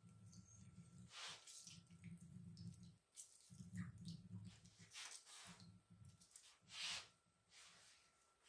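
Faint, wet squelching of a lemon wedge squeezed by hand, its juice dripping and splashing into a bowl of thin sauce, in several short separate sounds.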